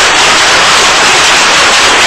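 Very loud, steady hiss of static that cuts in and cuts out abruptly, with dead silence on either side: an audio glitch in the upload rather than a sound from the scene.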